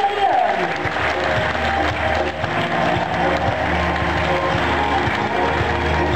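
Audience applauding over loud background music, with a voice heard briefly at the start.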